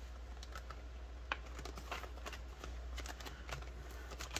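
Faint rustling and scattered light clicks of hands handling banknotes and the clear plastic pockets of a cash-budget binder.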